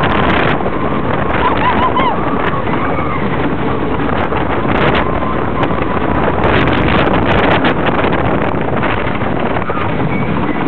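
Texas Giant wooden roller coaster train clattering over its wooden track at speed, with heavy wind on the microphone. A few short wavering cries from riders come about a second and a half in.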